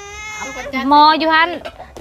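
A small child's short whining cry, one high held note, followed by speech.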